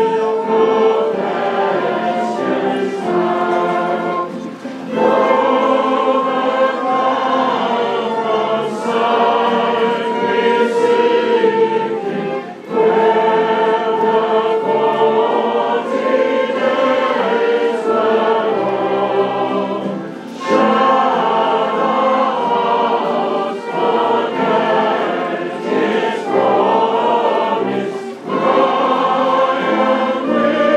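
A choir singing a slow hymn in long held phrases, with a short break about every eight seconds.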